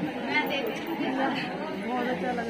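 Chatter of several people talking at once, no single voice standing out.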